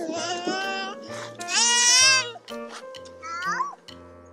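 Background music with a repeating bass line, over which a small child's high-pitched voice squeals without words: two long squeals in the first half, the second the loudest, and a short rising squeal a little after three seconds.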